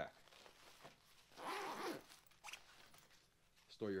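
Zipper on a fabric helmet backpack being pulled open in one pull about a second and a half in, followed by a brief click as the bag is handled.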